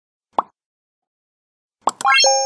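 Two short cartoon 'pop' sound effects from an animated subscribe-button graphic, one about half a second in and another near the end, where a quick rising run of chime notes begins.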